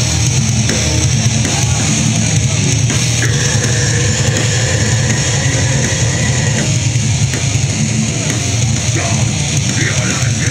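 Live grindcore band playing its intro: loud distorted electric guitars and a drum kit, heard from within the crowd. A high tone is held for about three seconds in the middle.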